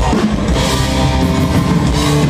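Live power metal band playing an instrumental passage: distorted electric guitars and bass over a drum kit, heard from within the crowd.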